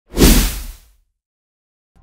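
A single whoosh sound effect with a deep boom underneath, swelling in quickly and fading out within about a second: a news logo sting.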